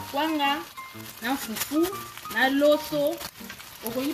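A voice singing in long, wavering phrases over background music. Underneath are faint sizzling and the stirring of chicken pieces with a wooden spoon in a frying pan.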